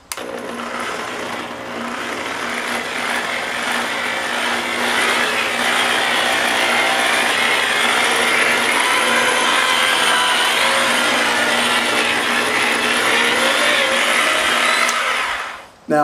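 Electric paint polisher with a foam waffle pad running against a motorcycle's painted fuel tank: a steady motor whine with the pad rubbing over the paint. It starts at once, builds a little over the first couple of seconds, and stops shortly before the end.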